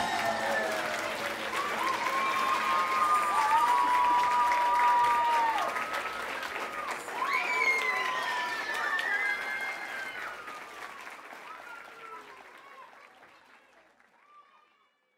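Audience applause with high voices calling out in long, drawn-out cries over the clapping; everything fades away over the last few seconds.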